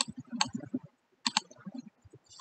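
Computer mouse button clicks: one right away, another just under half a second later, and a quick pair a little past the middle.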